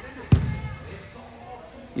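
A single hard kick of a soccer ball about a third of a second in, a sharp thump that echoes in the hall.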